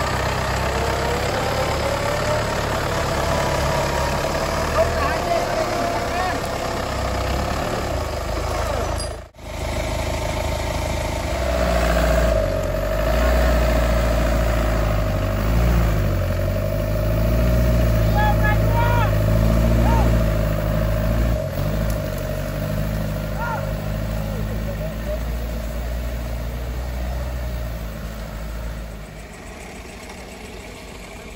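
An off-road 4x4's engine running under load while an electric winch motor whines, reeling in its cable to pull the vehicle up a steep bank. The whine rises early on and holds steady through much of the second half, over the engine's low rumble. The sound drops out briefly about nine seconds in.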